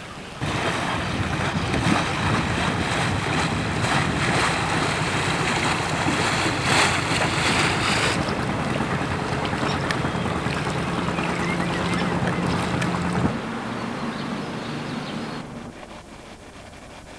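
Wind on the microphone and rushing water over the steady drone of a boat engine, heard aboard a moving motorboat. About halfway through the wind noise eases, leaving a steadier engine hum and water, which fade near the end.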